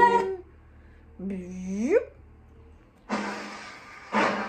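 A woman's voice making wordless rising 'ooh' sounds, two of them about a second apart, then a short noisy rush about three seconds in.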